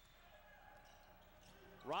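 Faint basketball dribbling on a hardwood court under a low, steady murmur of the gym crowd.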